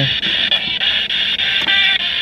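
Spirit box sweeping through radio stations: harsh, steady static chopped into short segments as it scans, with a brief fragment of pitched tones near the end.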